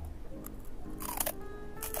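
Crisp crunching bites into a milk-flavoured Caprico wafer cone close to the microphone: a small crunch about half a second in, a louder one about a second in, and another near the end. Soft background music runs underneath.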